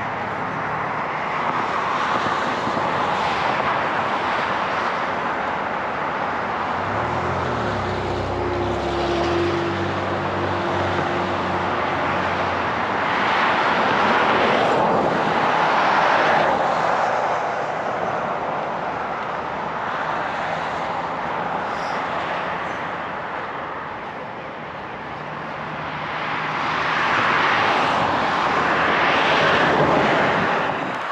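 Vehicles driving by: a steady road and engine roar that swells and fades twice, once around the middle and again near the end, with a motor's low hum for a few seconds about a third of the way in.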